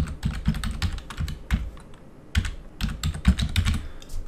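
Typing on a computer keyboard: a run of quick, irregular keystrokes with a short pause about two seconds in.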